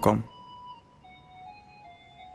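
A voice finishes a word right at the start. Then soft background music plays: a few faint held notes that shift pitch slowly, with no beat.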